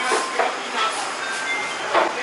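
Restaurant dining-room ambience: a steady din of room noise with indistinct background voices and a few brief clinks.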